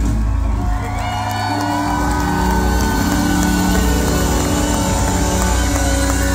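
A live band playing through a stage PA, with long held notes, while the crowd cheers and whoops.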